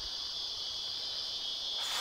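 Steady, high-pitched insect chorus, an unbroken shrill trill with no break or change.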